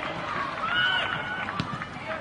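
Voices shouting across a football pitch during play near the goal, with one high call held for about half a second around the middle.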